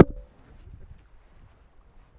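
A single sharp knock of handling noise on a handheld microphone as it is flung away, with a brief ringing tone after it. Then only faint low wind noise.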